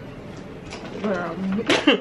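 A woman's voice: a short wordless hum-like sound about halfway through, then a quick throat clear near the end.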